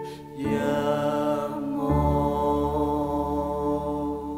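Song: a voice singing long held notes over romantic piano, with a brief dip just after the start and a deeper low note coming in about two seconds in.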